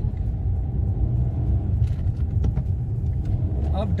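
Maruti Suzuki Alto 800's small three-cylinder engine and the road, heard from inside the cabin while driving: a steady low rumble.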